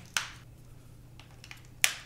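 Sharp plastic clicks from handling a TV remote control's battery compartment: one just after the start, a few faint ticks, then a louder click near the end.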